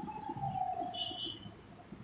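Birds calling: one long whistled note slowly falling in pitch, and a brief higher chirp about a second in.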